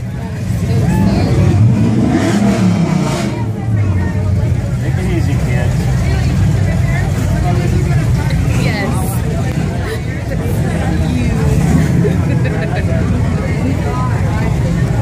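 A classic Chevrolet Camaro hot rod's engine rumbling as the car drives slowly past, rising and falling in pitch with a couple of short revs in the first few seconds. Crowd chatter runs underneath.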